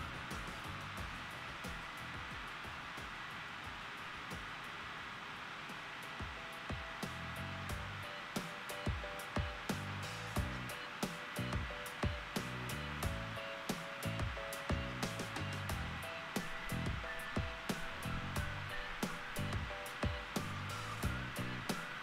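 Short clicks and taps of a quadcopter's frame plates, standoffs and small screws being handled and screwed together, over a steady hiss; the clicks come more often and louder from about eight seconds in.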